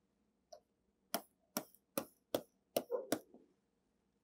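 A stylus pen tapping on a tablet screen while drawing hatch lines: about six sharp clicks, roughly every 0.4 s, between one and three seconds in.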